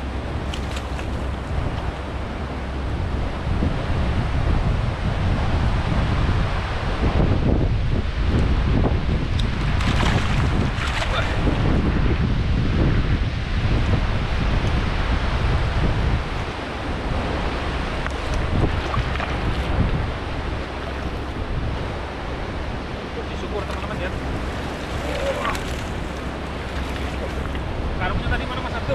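Wind buffeting the microphone over the running water of a shallow river, a steady rumbling rush that grows louder for a stretch in the middle.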